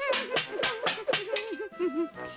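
Cartoon sound effects: a rapid run of about eight short clacks as pie tins are set down one after another on a counter, with a voice humming a wavering tune beneath them.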